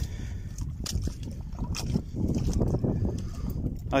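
Wind rumbling on the microphone, a steady low noise, with a few faint scattered clicks.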